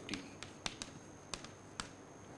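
Sharp clicks, about eight at irregular spacing over two seconds, over a faint steady high whine.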